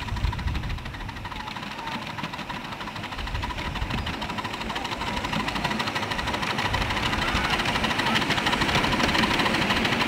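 10¼-inch gauge live-steam model of an LB&SCR Stroudley Terrier 0-6-0T tank locomotive chuffing in a fast, even beat as it runs, growing louder as it draws near.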